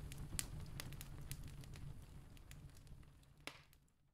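Fireplace fire crackling, with scattered sharp pops over a low rumble, fading out toward the end, with one louder pop just before it dies away.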